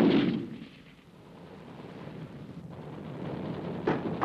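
Gunfire on a battle soundtrack: a loud shot or blast right at the start that dies away over about half a second, followed by a low noise that slowly grows louder.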